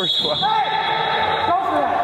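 A man's long, drawn-out high-pitched yell, held for nearly two seconds, with a rise and fall in pitch about half a second in and a step up in pitch near the end.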